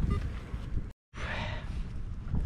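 Low, uneven wind rumble on the microphone, broken by a short dead silence about a second in where the recording cuts.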